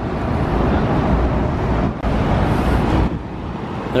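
City street traffic, with a vehicle passing close by: engine and tyre noise with a deep rumble. It is loud for about three seconds, then drops.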